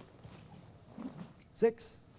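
A single short, sharp voiced shout about one and a half seconds in, like a kiai or a called count, with a brief hiss right after it. Faint low voice sounds come just before it.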